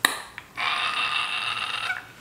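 A woman's high-pitched excited squeal, held steady for over a second, with a sharp click just before it.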